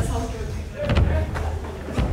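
A person's voice with a few short dull knocks, one at the start, one about a second in and one near the end, over a low rumble.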